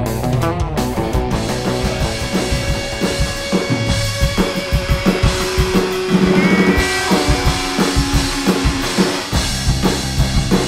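Rock music with a drum kit and electric guitar, played with a steady beat.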